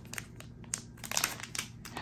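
Plastic packaging crinkling as it is handled: a string of light, irregular crackles, a little louder in the second half.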